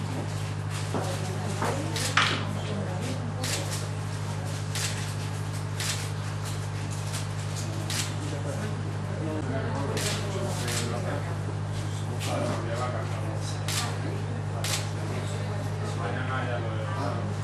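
Camera shutters clicking at irregular intervals, about fifteen sharp clicks, over a steady low electrical hum and faint murmured voices.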